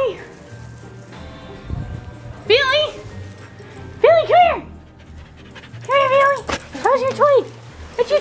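Dog whining in excited play: short rising-and-falling cries, several in quick pairs, over background music.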